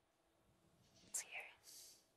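Near silence, with a faint, brief voice sound about a second in, like a breath or a whispered start of speech.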